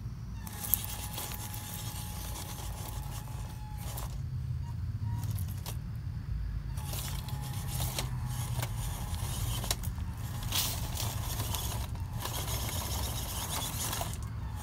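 WPL C24 RC crawler truck climbing loose rock: the faint steady whine of its small electric motor and gearbox, over scattered clicks and scrapes of tyres and stones shifting.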